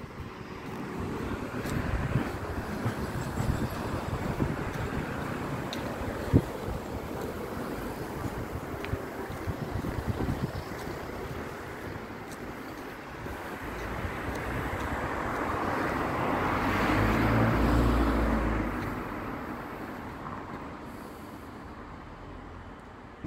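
Street traffic noise, with one motor vehicle passing: it grows louder about two-thirds of the way through, peaks, then fades away.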